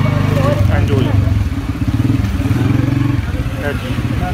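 A small engine running steadily close by, a low, evenly pulsing drone.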